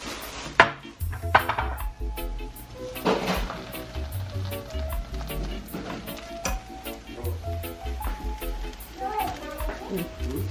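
A fork stirring and scraping through steaming cook-up rice in a hot pan, with a sizzle from the pan. Two sharp clinks in the first second and a half as the glass lid is taken off. Background music with a steady bass beat runs under it.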